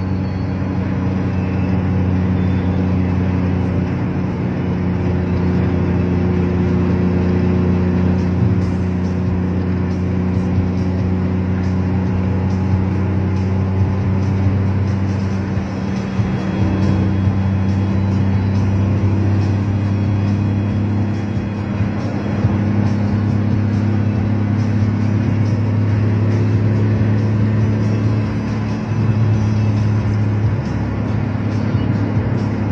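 Steady drone of vehicle engine and road noise at highway cruising speed, with music playing over it.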